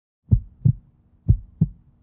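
Heartbeat sound effect: two low double thumps, lub-dub, about a second apart.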